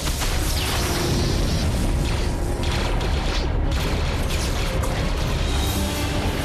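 Film soundtrack: orchestral score over a continuous deep rumble of explosions and blasts. Sci-fi destruction and thruster effects.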